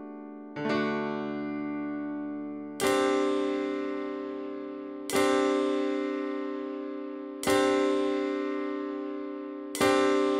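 Piano playing a slow chord progression: a chord struck about every two seconds, five in all, each left to ring and fade.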